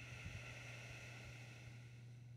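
A faint, drawn-out Ujjayi breath through the nose, one slow hissing breath lasting about two seconds, over a steady low electrical hum.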